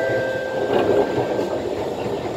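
Kawasaki C151 metro train running, heard from inside the carriage: a steady rumble of the ride with a thin high whine that fades out near the end.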